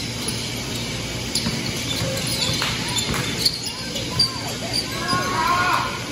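Basketball dribbled on a hardwood gym floor during play, with short sneaker squeaks and voices calling out in the large hall. The two sharpest bounces come about three and a half and four seconds in, and a voice rises near the end.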